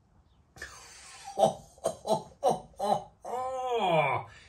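A man laughing after a sip of beer: a breathy exhale, then about five short laughs in quick succession, ending in one longer drawn-out laugh that rises and falls in pitch.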